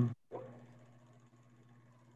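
The last moment of a man's hesitant "um", then the audio drops out and falls to near silence with only a faint steady hum.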